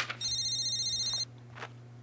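A phone ringing: one electronic ring of about a second, high-pitched with a fast warble, just after a sharp click.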